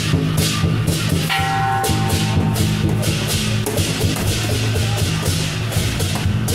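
Lion dance percussion band of drum, gong and cymbals playing a steady beat. Cymbal clashes come a few times a second over the drum, and a metallic tone rings briefly about a second in.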